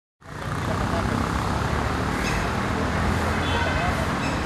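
Steady rumbling noise of a nearby motor vehicle and road traffic, with faint distant voices.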